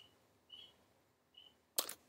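Mostly quiet, with two faint short high ticks and one sharp click near the end.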